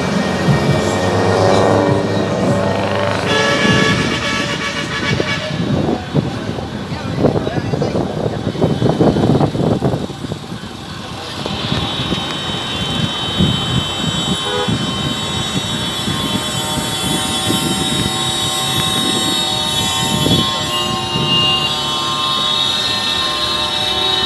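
Semi-trucks driving past with their diesel engines running, sounding long, held air-horn blasts. The horns sound during the first few seconds and again through most of the second half.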